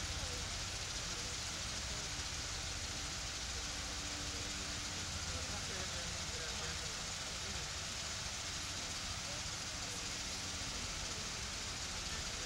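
Steady hiss and low rumble of open-air ambience, with faint, indistinct voices of a group of people talking.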